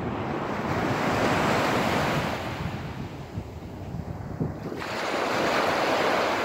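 Small waves breaking and washing up the sand, the rush swelling and easing, with wind buffeting the phone's microphone.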